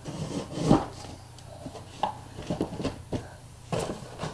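Handling noise as small objects are put back in place: a few knocks and scrapes, the loudest about three-quarters of a second in and another just before the end.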